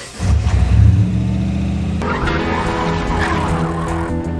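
A car engine revs hard and its tyres squeal as it pulls away, loudest in the first second. Soundtrack music comes in about halfway through.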